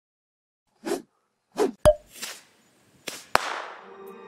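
Logo-intro sound effects: after a moment of silence, short swishes, a sharp click with a brief ringing tone about two seconds in, a softer swish, then a sharp hit near the end that trails off in a fading shimmer.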